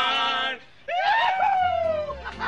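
Men's voices singing and hollering loudly: a held note that breaks off about half a second in, then one long drawn-out note that rises and slides slowly down. A music track with a bass line comes in near the end.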